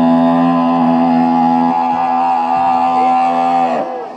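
A man's voice holding one long sung note into a microphone at a steady pitch, dipping and breaking off just before the end.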